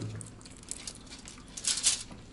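Forks picking at a baked fish on an aluminium-foil tray: a few light clicks of cutlery, then a short, louder rustle of foil and scraping near the end.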